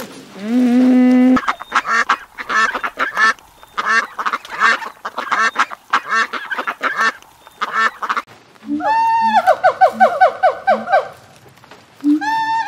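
A calf moos briefly, then a flock of domestic ducks quacks for several seconds. Near the end a white-cheeked gibbon calls: a rising whoop that breaks into a rapid run of repeated notes.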